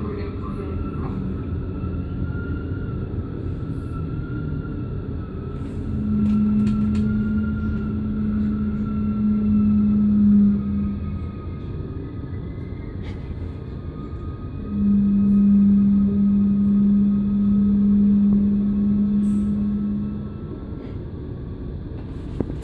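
Electric passenger train running and slowing into a station, heard from on board: a steady low rumble with a faint whine that slowly falls in pitch. Two long steady low hums, about five seconds each, come a few seconds in and again past the middle.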